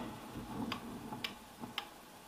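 Light wall switches clicking under a gloved hand: three sharp clicks about half a second apart.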